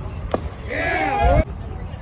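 A single sharp smack, then a loud shout lasting most of a second whose pitch rises and falls.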